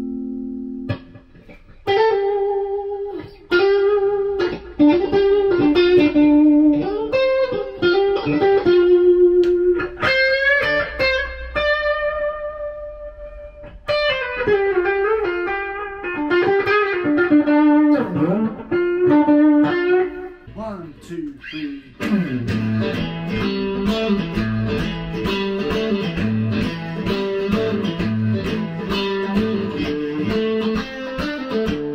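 Chapman ML1X electric guitar played through an amp: blues-style single-note lead lines with string bends, pausing briefly about two-thirds of the way through, then switching to a busier passage with low notes and chords.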